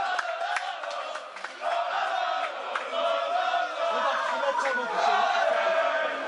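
A group of men chanting and shouting together in a victory celebration huddle, many voices at once, growing louder about a second and a half in.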